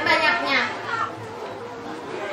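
A girl's voice speaking for about the first second, then a pause filled with a low hubbub of children's voices in the room.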